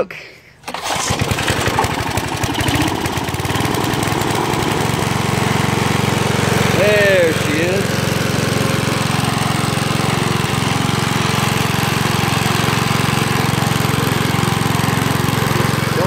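Single-cylinder 5 hp Briggs & Stratton engine on a 1980 Toro HD Whirlwind push mower pull-started with a little choke: it catches less than a second in, comes up to speed over the next few seconds and then runs steadily.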